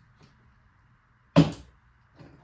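A single short, sharp knock of a metal adjustable spanner, about a second and a half in, while a hose fitting is being nipped up on a scuba regulator first stage.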